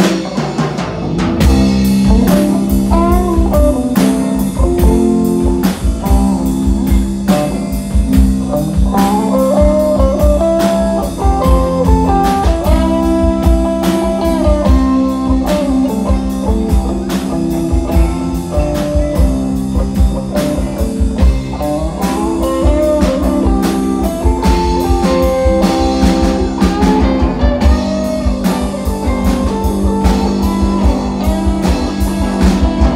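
Live band playing a blues-rock song: drum kit and bass keep a steady groove under strummed guitar, with a lead electric guitar line bending over the top.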